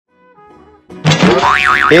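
Animated intro jingle: faint music tones, then about a second in a loud cartoon 'boing' sound effect whose pitch wobbles rapidly up and down over the music.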